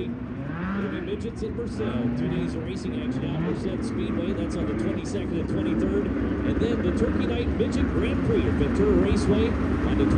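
Several midget race car engines running around a dirt track, with a few rising revs in the first few seconds. A mix of engine notes follows, growing louder toward the end as the cars come nearer.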